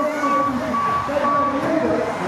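An electronic beeper sounding short beeps at one steady pitch, about two a second, stopping shortly before the end, over a voice talking.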